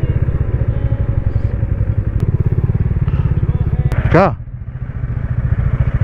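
Motorcycle engine running under way with a steady low pulse, heard from the rider's seat. About four seconds in it drops off and goes quieter as the bike slows to pull up.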